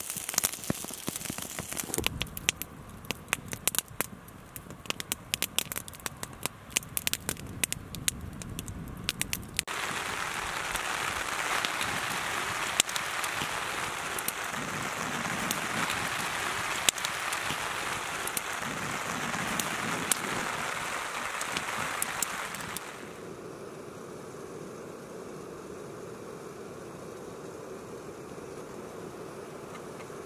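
Wood campfire crackling with many sharp pops under a pot of stew. It turns into a steadier, louder hiss with fewer pops. In the last few seconds a quieter, even outdoor background takes over.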